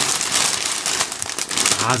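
Clear plastic inner bag of crunchy muesli crinkling as it is handled, with the dry clusters inside rustling against the film: a dense, continuous crackle.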